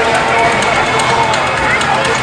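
Many people talking at once, a steady loud babble of voices in which no single voice stands out.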